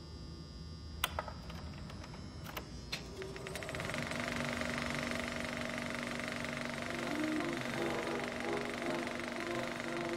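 A few separate clicks, then about three and a half seconds in a film projector starts running with a fast, even clatter and a steady high tone. Faint music comes in underneath near the end.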